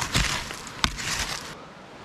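Hand digging in loose soil and leaf litter: a scraping rustle at the start and one sharp click a little under a second in, like something hard striking glass or stone.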